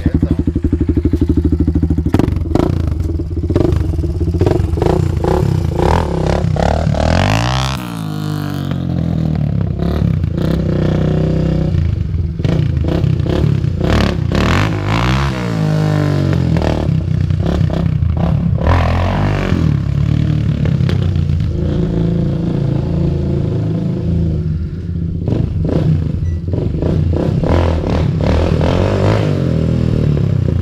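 A 300cc sport ATV engine being ridden hard, its revs rising and falling again and again as the throttle is worked for wheelies. There are sharp drops and climbs in pitch about 8 and 15 seconds in.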